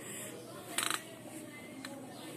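Handling noise from petting a cat: a brief rasping rub about a second in and a light click near the end.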